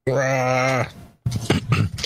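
A person's long, low groan, held steady for under a second, followed by brief broken vocal sounds.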